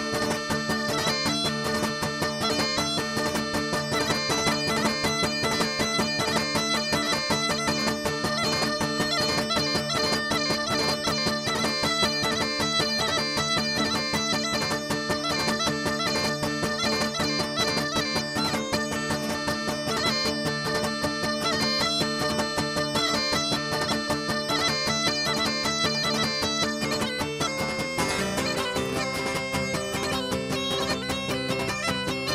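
Cretan askomantoura (bagpipe) playing a dance tune over its steady drone, with strummed laouto, mandolin and guitar accompaniment. About two seconds before the end the tune moves to a higher register.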